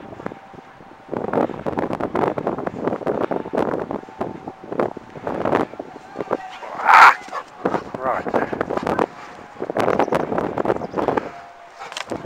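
A person's voice talking on and off, the words indistinct, with one short louder call about seven seconds in.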